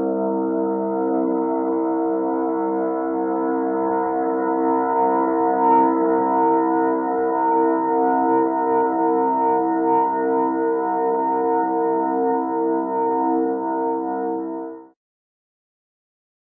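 Web audio-file playback of the sound of a fictional Aeolian wind harp: a held, organ-like chord of several steady tones, some of them pulsing slightly. It cuts off suddenly about fifteen seconds in.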